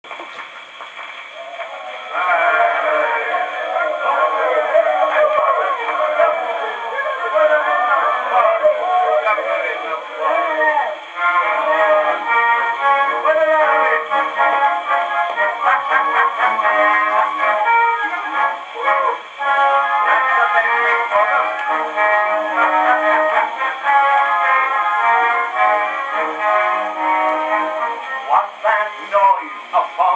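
A c.1912 ragtime 78 rpm record playing on a horn gramophone: the instrumental introduction before the singing. The sound is thin and narrow, with no deep bass, as on an acoustic-era disc. It comes in fully about two seconds in, after a quieter opening.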